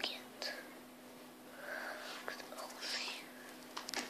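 Soft whispering by a person, in a few short breathy bursts, over a steady low hum.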